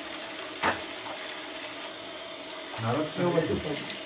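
Kitchen tap running into a sink while dishes are washed by hand: a steady rush of water, with a brief knock about half a second in.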